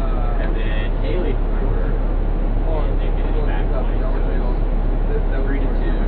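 Motor coach idling at a standstill, a steady low drone heard from inside the cabin.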